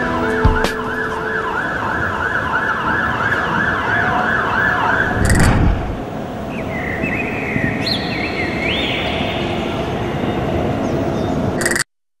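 Emergency vehicle siren in a fast yelp over city traffic noise, rising and falling about three times a second. About five seconds in there is a short loud burst of noise, then a siren rises in slower, higher wails. Everything cuts off suddenly just before the end.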